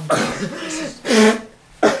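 A woman crying into a tissue: two breathy, broken sobs of about half a second each, then a short sharp one near the end.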